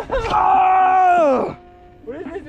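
A man's long, drawn-out shout of excitement, held at one pitch for over a second and then sliding down as it ends.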